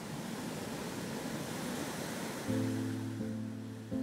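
A soft, even rushing noise, then background music comes in about two and a half seconds in with low held chords.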